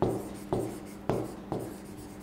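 Marker pen writing on a whiteboard: four short strokes about half a second apart, each starting sharply and fading.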